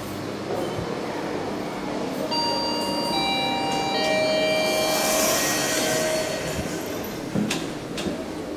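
ThyssenKrupp traction elevator arriving at the landing with its doors sliding open: an electric machine whine made of several steady pitches that come in one after another, with a rising hiss. The whine stops after a few seconds, followed by a sharp click near the end.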